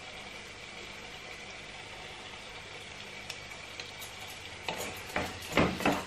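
Mashed mackerel masala sizzling steadily in a pot on a gas hob. A little over four and a half seconds in, a wooden spoon starts stirring, scraping and knocking against the pot several times, the loudest sounds.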